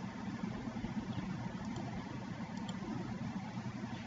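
Steady low background rumble with no speech, like a motor or engine running in the background.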